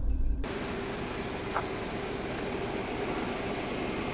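A high tone from the intro ends about half a second in, then a steady hiss with a faint low hum takes over, with one small tick in the middle.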